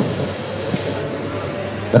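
Steady background noise with no clear source, with one faint click a little under a second in. A man's voice stops just at the start and starts again near the end.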